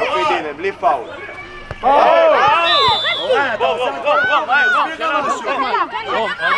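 Several young voices shouting and calling out over one another during play, loudest from about two seconds in.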